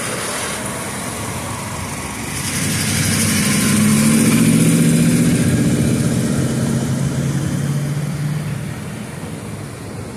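Road traffic at an intersection: cars passing close by. A vehicle's engine hum grows louder from a couple of seconds in, holds, then fades away near the end.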